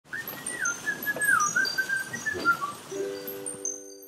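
Channel intro sound logo: a whistled tune that slides up and down in pitch over a noisy wash, then a held chord with bright chiming tones near the end.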